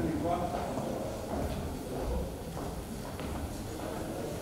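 Several people walking across a wooden stage floor, their shoes knocking on the boards in irregular steps, with faint murmured voices.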